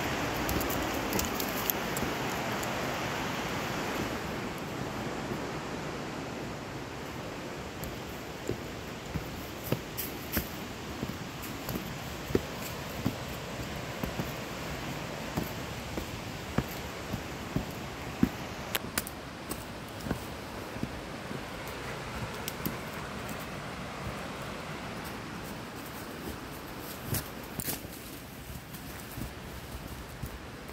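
Steady rushing noise of fast movement down a rocky dirt trail, louder for the first few seconds, broken by irregular sharp knocks and clicks from bumps over rocks and roots.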